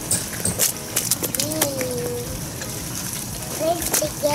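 A faint, drawn-out voice sound in the background, with scattered small clicks and rustles of handling.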